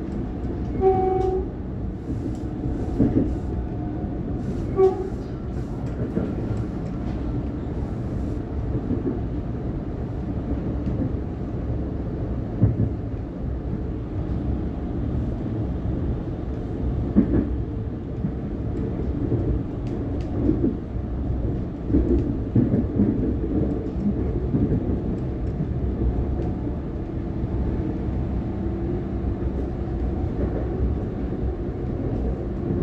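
Steady low rumble of a Siemens Nexas electric train running at speed, heard from inside the carriage, with scattered clicks of the wheels over the rails. A short horn note sounds about a second in and again about five seconds in.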